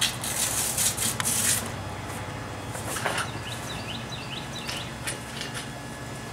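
Velcro straps being ripped open, with loud rasping tears in the first second and a half and a few fainter scrapes later. Birds chirp in the background.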